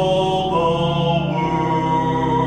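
Church hymn singing: voices holding long, slow notes over a steady organ accompaniment.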